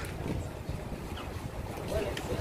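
Outdoor background noise dominated by a low, uneven rumble of wind on the phone's microphone.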